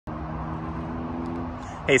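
Steady freeway traffic noise: an even rumble and hiss with a low steady hum under it. A man's voice begins right at the end.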